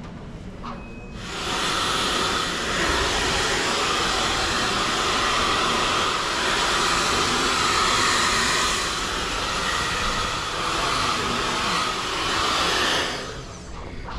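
Handheld hair dryer blowing: switched on about a second in, it runs as a loud, steady rush of air, then cuts off about a second before the end.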